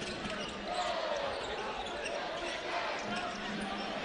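Basketball arena game sound: a steady crowd murmur with scattered voices, and a ball dribbling on the hardwood court.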